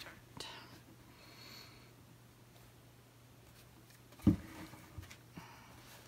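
Pencil drawing on a painted canvas on a tabletop: faint scratching and a few light ticks, with one louder thump about four seconds in.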